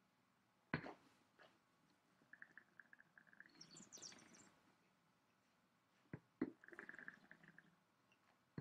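Red wine being tasted by mouth: a lip smack about a second in, then air sucked through the wine held in the mouth in fluttering, gurgling slurps ending in a hiss of drawn-in air. Two more smacks come around six seconds, followed by another gurgling slurp.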